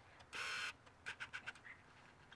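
A short, faint breathy hiss, then four or five faint light clicks, like mouth or camera-handling noise close to the microphone.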